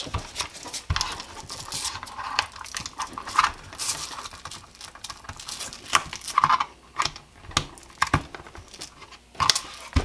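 Polymer holster and nylon duty belt being handled: rustling of the webbing with irregular plastic clicks and knocks as the holster's clip attachment is worked onto the belt.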